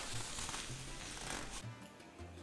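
Quiet background music with a few short low bass notes, under a soft hiss of breath and chewing as a hot chicken wing is eaten.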